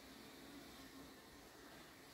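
Near silence with a faint hiss, and honeybees flying around the hive heard as faint buzzing that comes and goes a few times.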